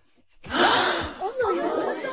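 A man groaning in pain with breathy gasps after being hit, starting about half a second in.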